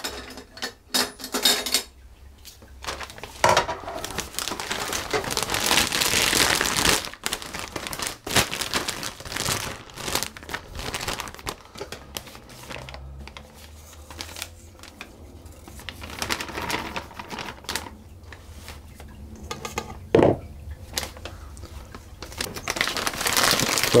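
Disposable plastic piping bag crinkling and rustling as it is handled and filled with spoonfuls of meringue, with a few knocks of a spoon against a stainless steel mixing bowl.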